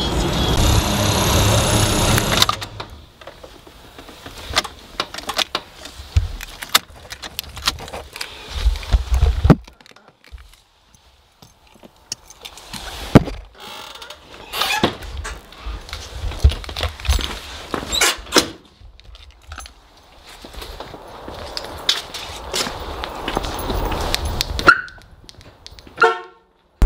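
Car cabin road and engine noise for the first two seconds or so, cutting off suddenly. Then scattered knocks, thunks and clicks of a phone being handled and moved about, with short quiet gaps.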